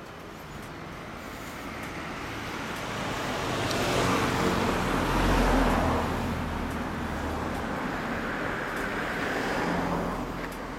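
A motor vehicle's engine running close by among road traffic, growing louder to a peak about five seconds in and then easing to a steady level.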